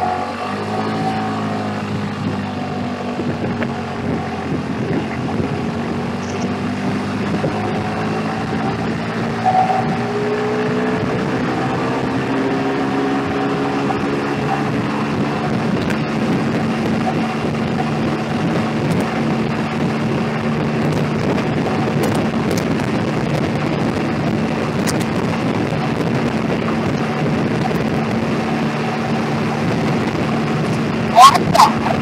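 Small motorbike engine, heard from on board, pulling away with a rising pitch over the first ten seconds or so, then running at a steady cruising speed, with wind and road noise throughout.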